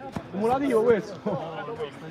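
Men shouting on a five-a-side football pitch, one loud call rising and falling in pitch through the first second, with a short sharp knock just before it.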